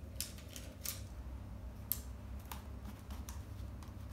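Scattered light clicks and rustles of hands handling small craft pieces (foam stickers on a craft-stick basket) on a tabletop, over a steady low hum.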